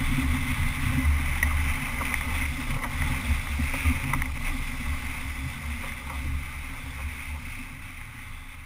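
Wind buffeting the microphone in a low, gusty rumble over rushing water, as a sailing yacht drives through rough seas. The sound slowly fades over the last few seconds.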